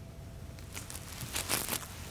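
A few soft shuffling footsteps and rustles on a floor, as short scuffs clustered in the second half.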